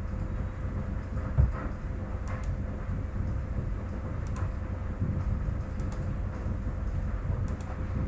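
Steady low background hum of a recording room with a faint steady tone, with a few faint clicks of a computer mouse as selection points are placed.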